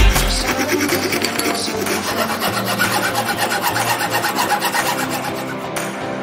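Thin-bladed hand saw cutting through a wooden dowel in quick back-and-forth rasping strokes, with music playing underneath.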